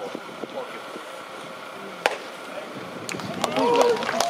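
A baseball pitch hitting the catcher's mitt with a single sharp pop about two seconds in. Near the end comes a loud shouted voice, the home-plate umpire calling a strike, over faint spectator chatter.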